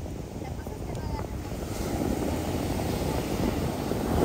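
Heavy ocean surf breaking and rushing up the beach, with wind buffeting the microphone; the rumble swells about halfway through.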